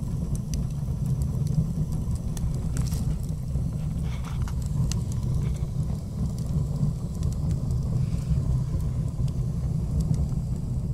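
A steady low rumble with faint, scattered crackles above it.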